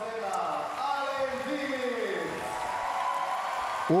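A man's voice trails off and falls in pitch over the first two seconds. Then the crowd in a gymnastics arena applauds and murmurs.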